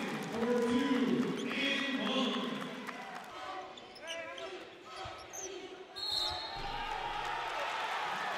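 A basketball bouncing on a hardwood gym floor during play, with a voice talking over the first three seconds and quieter court noise after.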